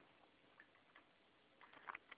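Near silence with a few faint, short clicks scattered through it.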